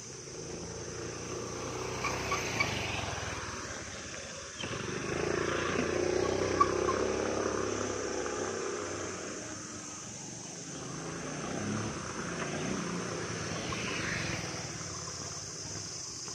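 Road traffic engines that swell and fade, once from about four and a half seconds in and again near the end, over a steady high insect drone.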